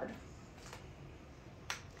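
Sharp click of a Holter monitor's plastic latch as its battery and card compartment is opened, with a fainter tick about a third of the way in, over quiet room tone.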